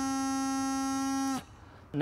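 Bagpipe practice chanter holding one steady note, which cuts off abruptly about one and a half seconds in.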